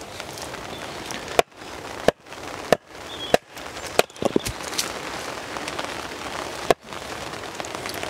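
Axe splitting a log section radially on a chopping block: four sharp knocks about two-thirds of a second apart in the first few seconds, and one more near the end.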